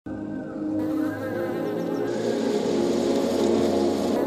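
Many honeybees buzzing together in a steady hum.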